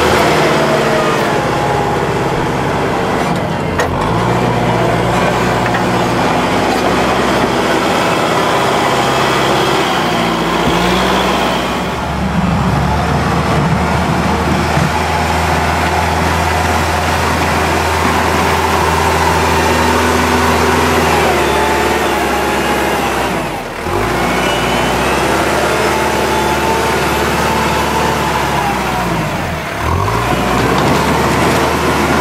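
Kubota tractor's diesel engine working under load as it pushes snow with a front plow, running steadily with its pitch rising and falling a few times. The sound drops briefly twice.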